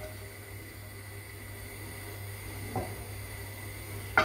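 Steady faint hiss and low hum from a pan of oil heating on a gas stove as slices of ginger go in, with one brief soft sound a little under three seconds in.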